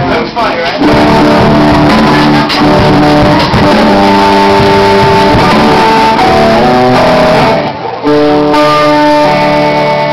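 A rock band playing live, led by electric guitars ringing out held notes and chords that change about every second, recorded very loud.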